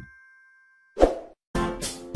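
Outro jingle sound effects: a chime tone ringing out and fading, a short sound effect about a second in, then music starting up again halfway through.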